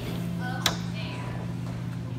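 Steady low electrical hum of a refrigerated display case, with one sharp knock a little over half a second in.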